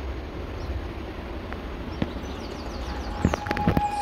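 Live sound of walking on a grassy forest trail: a low steady rumble of wind on the microphone, a few faint high chirps, and a cluster of footsteps and knocks in the last second.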